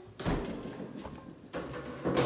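A single sharp knock about a quarter second in, of the kind a kitchen cupboard door or drawer makes when it shuts, followed by softer handling and movement noise and a smaller knock later on.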